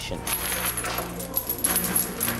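Metallic jingling and clinking, many quick light strikes, over a low steady hum.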